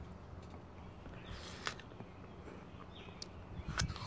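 Quiet outdoor background with a brief soft hiss a little past a second in. Near the end, crisp crunching as a bite is taken from an apple slice.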